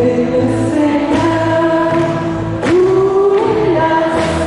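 Worship song: a group of voices singing together in long held notes over instrumental accompaniment with a steady bass.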